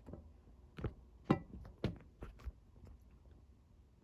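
Light handling noise: about half a dozen short clicks and knocks spread irregularly over a few seconds as a handheld camera is moved in toward the fan.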